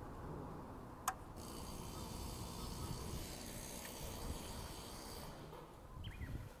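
A single sharp click about a second in as the engine switch on a Shibaura tiller is turned on, over faint low rumble, with a faint high hiss setting in just after the click.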